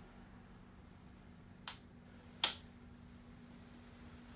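Two sharp clicks a little under a second apart, the second louder, over a faint steady hum.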